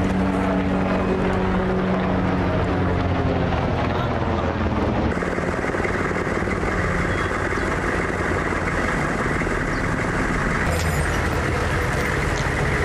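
Military Humvee's diesel engine running as the truck passes, with men's voices under it. About five seconds in, the sound changes abruptly to a steady rushing noise.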